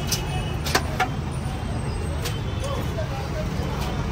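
Steady low rumble of street traffic, with a few sharp metallic clicks as a steel mesh strainer lifting fried chicken knocks against the pot.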